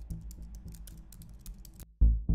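Rapid computer-keyboard typing clicks, about ten a second, stopping suddenly near the end, over a low music bed.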